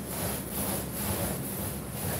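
Paint roller on an extension pole rolling wet paint across a large flat screen sheet, a rubbing, slightly sticky sound that swells and fades with each steady back-and-forth stroke.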